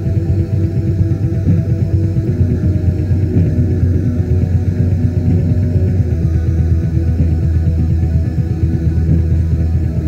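Raw black metal from a lo-fi cassette demo: fast, dense drumming under sustained droning chords, with a muddy, bass-heavy sound.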